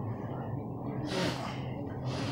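A man taking one quick, sharp breath about a second in, over a steady low hum.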